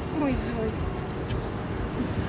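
A woman says one short word, over a steady low outdoor rumble. A single brief click comes a little over a second in.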